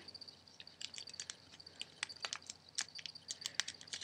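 Flimsy origami paper being folded and creased by hand: faint, irregular small crinkles and clicks of the paper.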